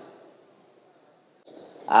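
A man's voice trails off into a pause of near silence. Just before the end, a short intake of breath, and then his speech starts again.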